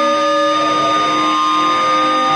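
Electric guitar feedback through a loud amplifier: several steady, sustained tones held over a haze of distorted noise, with no strumming or drums.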